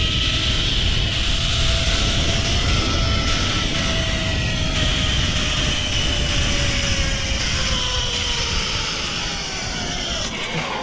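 Zipline trolley running fast along the steel cable: a continuous whirring whine over a loud rush of wind. The whine slowly drops in pitch and the sound eases near the end as the trolley slows toward the landing.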